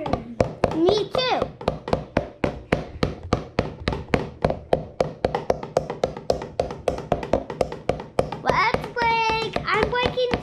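Rapid, even series of light thunks, about four or five a second, from a foam toy pickaxe being struck against something over and over, as in mining a block. A child's voice sounds briefly about a second in and again near the end.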